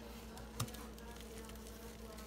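Soapy, foam-soaked sponges squeezed by hand in a plastic tub: faint wet squishing, with one sharper squelch about half a second in. A steady low hum runs underneath.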